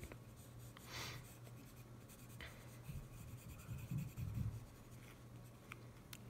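Faint scratching of a Tombow Irojiten colored pencil drawing on paper, in a few short strokes.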